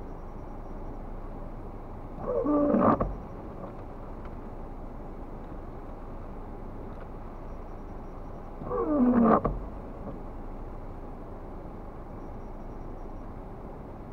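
Windscreen wiper blade dragging across wet glass with a pitched, juddering rub that falls in pitch, ending in a low thump as the arm stops. It sweeps twice, about six seconds apart, over a steady background rumble.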